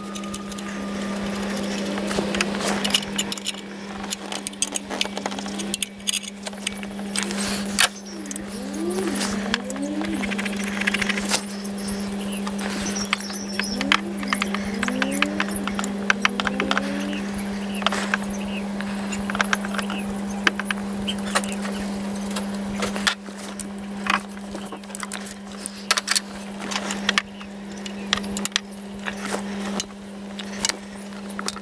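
Hands refitting metal injector fuel lines and plastic clip-on connectors in an engine bay: frequent light clicks, taps and rattles over a steady low hum, with a few short rising squeaks in the middle.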